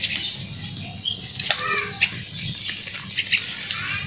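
Rustling and scattered light clicks in leaf litter and undergrowth, with a few brief high chirps over a steady low background rumble.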